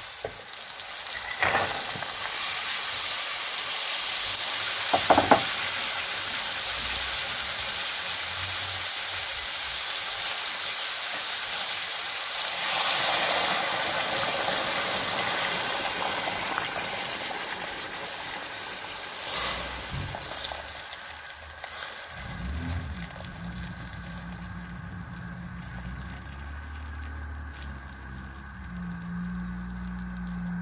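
Cow's feet, onions and spices sizzling in hot oil in an aluminium pot, stirred with a wooden spatula that knocks against the pot a couple of times early on. The sizzle swells about halfway through, then dies down as water is poured into the pot, and a low steady hum sets in for the last part.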